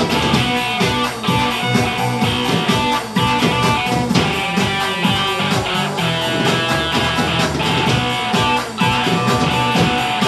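A live rock band playing: strummed electric guitar over a drum kit, with a strong drum hit about once a second.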